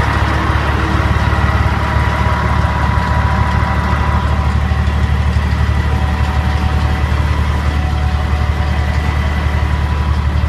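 Engine of a 1998 Cedarapids 5048 horizontal shaft impactor crushing plant running steadily at idle: a loud, even low drone with a faint steady whine above it.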